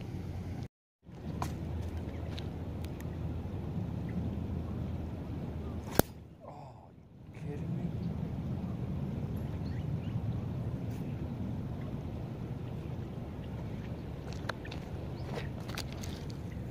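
Wind noise on the microphone, a steady low rumble, broken by a brief total dropout just before a second in and a sharp click about six seconds in, followed by a quieter stretch of a second or so; a few faint clicks near the end.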